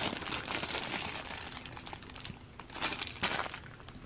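Clear plastic bag crinkling and rustling as hands unwrap a metal retractable keychain, with a louder burst of crinkles around three seconds in.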